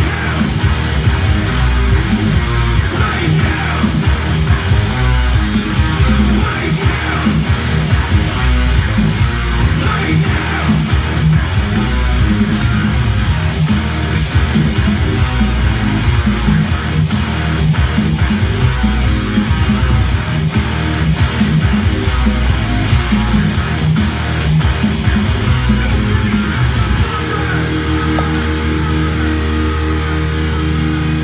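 Electric guitar playing heavy metal riffs over a band recording of the song, with bass and drums. About 27 seconds in, it settles into a sustained ringing chord.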